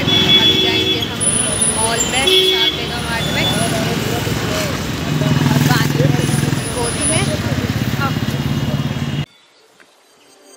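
Busy road traffic, with motorbikes and cars running past and people's voices mixed in. It cuts off abruptly about nine seconds in.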